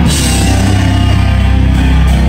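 Heavy rock band playing loud live, drums and cymbals under a held low chord from bass and guitar.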